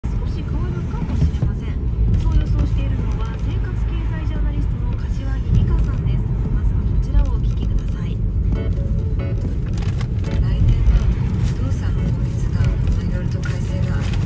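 Car driving, its road and engine noise a steady low rumble inside the cabin, with a voice and music heard faintly over it.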